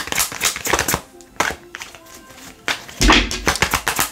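A deck of tarot cards being shuffled in the hands: a fast run of card clicks and taps that breaks off about a second in and starts again, loudest, near the three-second mark.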